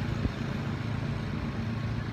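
A steady low hum of an idling vehicle engine.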